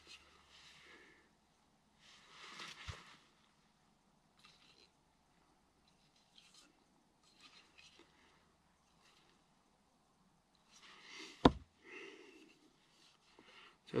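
Axes being handled at a wooden chopping block: faint rustling and shuffling, a soft thump about three seconds in, and a single sharp knock, the loudest sound, about eleven and a half seconds in as the axes are set against the block.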